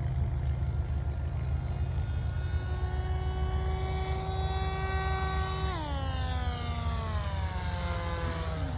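Propeller and motor whine of a small fixed-wing UAV flying past. The pitch holds steady and climbs slightly as it approaches, then drops sharply about six seconds in as it passes and keeps falling as it moves away, over a steady low rumble.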